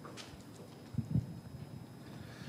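Two soft, low knocks close together about a second in, over faint room tone.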